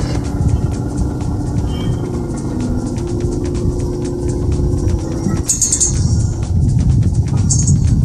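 A four-tonne BOMAG tandem road roller's diesel engine running with a steady low rumble as the roller drives over a mattress, under background music.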